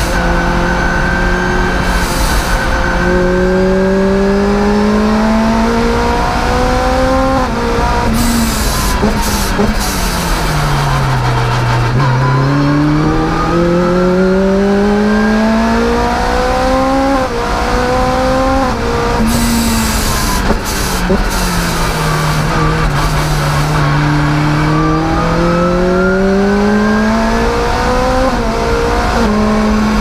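Supercharged Lotus Exige's engine at full throttle, heard from inside the cockpit: the pitch climbs as it revs out and drops sharply at each upshift. Twice it falls away under braking and downshifts, about ten seconds in and again about twenty seconds in, then pulls up through the gears again.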